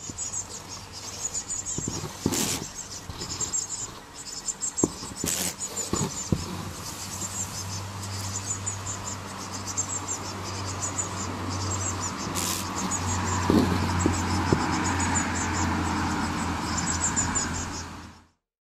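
Burying beetle weighed down with mites, buzzing its wings in a low, steady drone that grows stronger about a third of the way in. A few sharp clicks and faint high chirping sound behind it.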